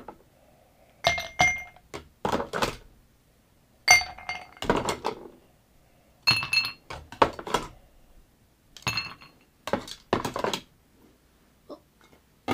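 Ice cubes picked from an ice bucket with tongs and dropped into glasses: a series of clinks and knocks every second or so, some leaving a brief glassy ring.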